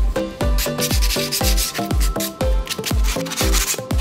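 A plywood board being sanded or rubbed by hand, a hissing scrape over background music with a steady kick drum at about two beats a second.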